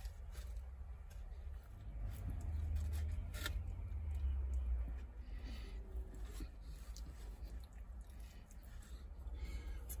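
A man biting into and chewing a saucy barbecue pork sandwich with his mouth close to the microphone: quiet chewing with dull low thumps that swell in the middle and a few faint clicks.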